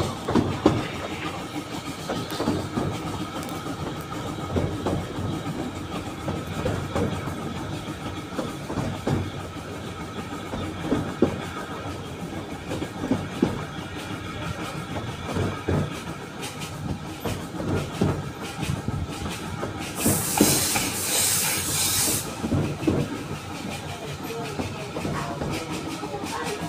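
Narrow gauge steam train no. 762 running, heard from a carriage window: a steady rumble with irregular clicks and knocks of the wheels over the rail joints. About twenty seconds in comes a two-second burst of loud hissing.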